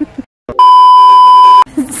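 A censor bleep: one loud, steady, high-pitched electronic beep about a second long, starting about half a second in after a brief cut to dead silence. Laughing voices come just before and after it.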